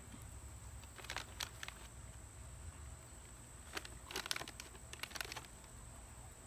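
Quiet outdoor background with a steady, thin, high insect drone, broken by a few short clicks and rustles: once about a second in, and a small cluster around four to five seconds in.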